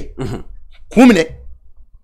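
Two brief wordless vocal sounds from a speaker: a short one just after the start, and a stronger one about a second in that rises and then falls in pitch.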